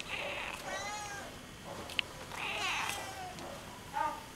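A domestic cat meowing twice, two drawn-out calls each about a second long, with a short sharp click between them.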